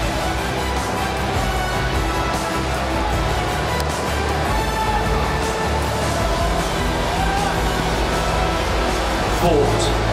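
Background music with sustained tones over a deep bass, with a voice faintly under it.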